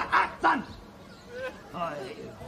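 Two short yelp-like vocal sounds in quick succession, the second sliding down in pitch, followed by faint quieter sounds.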